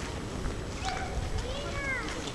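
A couple of short, high-pitched voice-like calls that bend in pitch, the last one near the end, over a steady low rumble.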